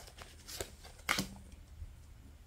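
Kipper oracle cards being handled: a few short, soft slides and slaps as a card is drawn from the deck and laid on the table. The loudest comes about a second in.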